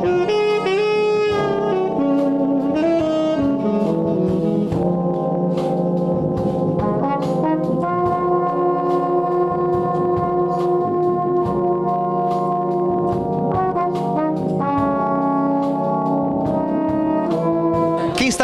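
A brass band of euphoniums, tubas and trumpets plays slow, sustained chords that change every few seconds, with a saxophone soloist playing alongside.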